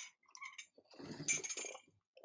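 Faint human mouth and throat sounds in a pause between sentences: a short breathy hiss at the start, a few soft clicks, then a low, croaky murmur from about a second in.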